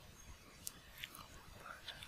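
Very quiet pause: faint room tone with a few soft clicks, about three over two seconds.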